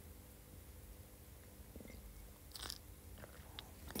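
Near silence: faint room tone with a few tiny clicks and a brief soft hiss about two and a half seconds in.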